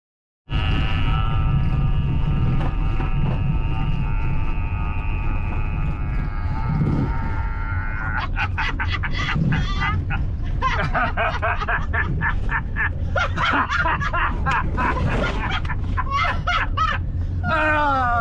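Two people laughing hard in repeated bursts from about eight seconds in, over the steady rumble of a camper van driving on a gravel road. Held musical tones sound over the rumble for the first several seconds.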